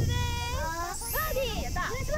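Excited high-pitched voices calling out and cheering in congratulation for a holed birdie putt, with a low thud at the very start and a short rising high sound a little past one second in.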